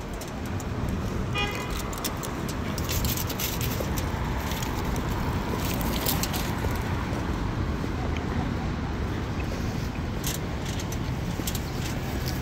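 City street traffic: cars running along the avenue as a steady hum of engine and tyre noise, with a short high-pitched tone about a second and a half in.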